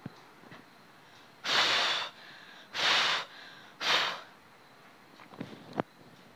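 A woman breathing hard from exertion during a floor exercise: three loud, forceful breaths about a second apart, close to a clip-on microphone.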